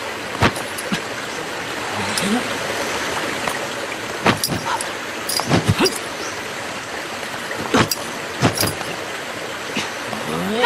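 Steady rush of a waterfall under a kung fu fight's sound effects: about ten sharp swishes and hits of punches and blocks, some coming in quick pairs and threes, with a short voiced grunt about two seconds in.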